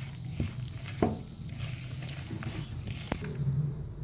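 Hand rubbing and mixing flour in a plastic bowl: soft rustling with a few light knocks, over a steady low hum.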